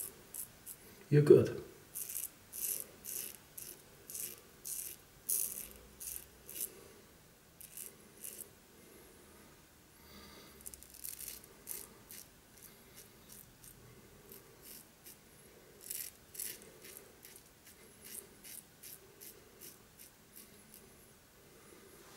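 Razorock SLAB slant double-edge safety razor scraping lathered stubble on the upper lip and chin in a run of short strokes. Each pass is a brief rasping scratch, coming one or two a second in clusters, with a louder low sound about a second in.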